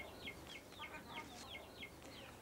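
Faint, rapid peeping of chicks: a steady run of short, downward-sliding high peeps, about three a second.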